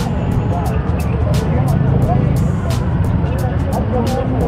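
A steady low rumble of idling motorcycles and traffic, with voices and music over it. The music has a quick, crisp beat of about three to four strokes a second.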